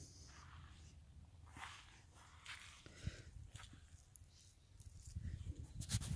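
Quiet outdoor background with a few faint, brief rustles and clicks from the camera being moved among the vine branches, and a low rumble swelling near the end.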